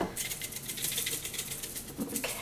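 Dry seasoning granules rattling rapidly inside a plastic spice shaker as it is shaken.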